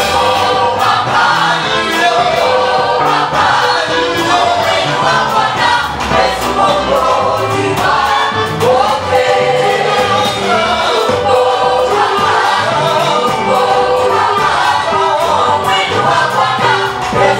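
Praise-and-worship team of women and men singing a Swahili gospel song together into microphones, over live accompaniment with a steady beat.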